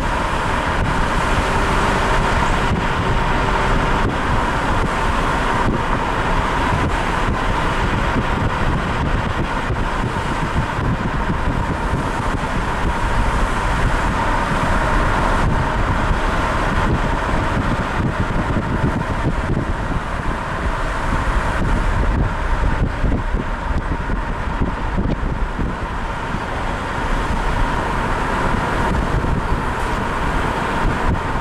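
Steady road and wind noise of a moving car, heard from inside the car.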